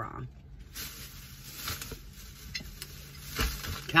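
Rustling and light clicks as store goods and their packaging are handled, with a dull thump about three and a half seconds in.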